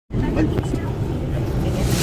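Steady low engine and road rumble inside a slowly moving vehicle's cab, with a voice saying one word early on.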